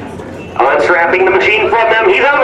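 A man's voice talking loudly, starting suddenly about half a second in, over fainter background talk.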